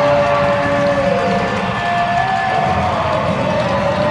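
Arena goal horn sounding over a cheering crowd after a home goal. The horn's pitch sags about a second in, and a second, higher tone follows and slides down.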